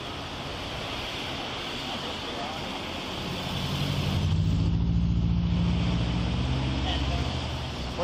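A motor vehicle driving past on the road, its engine growing louder about three seconds in, loudest near the middle and fading near the end, over a steady background hiss.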